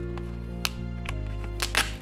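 Background music with steady held chords, over two short rustling tears of a paper envelope being torn open, one about two-thirds of a second in and a longer one near the end.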